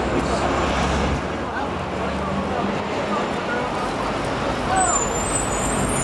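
City street traffic noise with vehicles running, a low engine hum in the first couple of seconds and a high thin squeal near the end, under scattered voices of people around.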